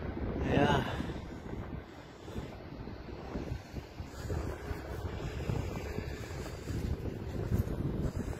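Wind buffeting a handheld camera's microphone, a rough, uneven low rumble, with a brief voice sound just after the start.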